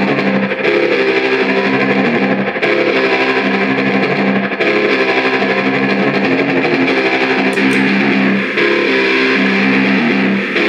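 Electric guitar playing a short repeating riff through effects pedals, its tone changing every two seconds or so as the sound bank is switched.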